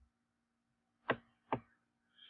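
Two sharp computer mouse clicks about half a second apart, a little past the middle, over a faint steady hum.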